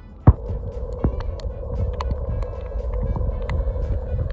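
Underwater sound picked up by a camera: a low rumble of moving water with a steady hum, one loud knock about a third of a second in, then many scattered sharp clicks.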